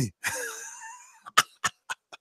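A man's breathy, wheezing laugh that fades out over about a second, followed by three short, sharp bursts.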